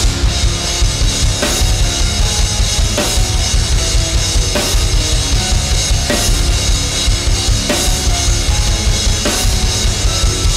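Pearl Master Custom drum kit with Sabian cymbals played hard in a metalcore groove: rapid bass drum beats under snare, with a crash accent about every second and a half, over a heavy metal backing track with distorted guitars.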